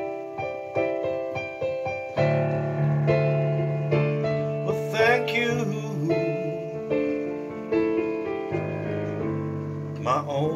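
Piano playing a slow ballad instrumental break: light repeated chords about twice a second, then fuller chords with low bass notes from about two seconds in.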